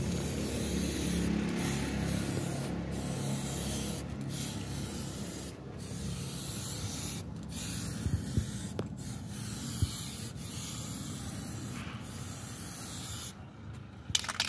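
Aerosol spray can hissing in repeated passes, broken by short pauses about every second and a half.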